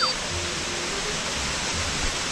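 Steady rush of a waterfall: an even hiss of falling water.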